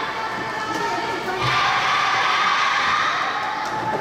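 Crowd of spectators cheering and shouting, growing louder about one and a half seconds in.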